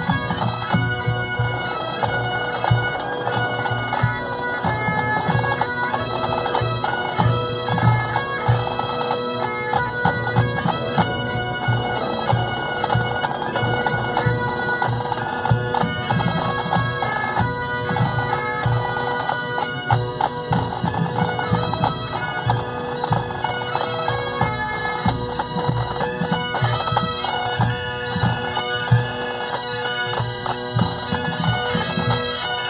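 Scottish pipe band playing a competition medley: Great Highland bagpipes with their steady drones under the chanter melody, backed by snare, tenor and bass drums.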